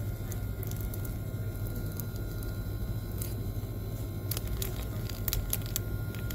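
Steady low hum of shop background noise with a faint steady high tone, and a scattering of short crackles from plastic product packaging being handled, most of them in the last second or two.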